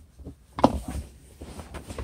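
Faint rustling handling noise as the camera is moved about, with one short spoken word partway through.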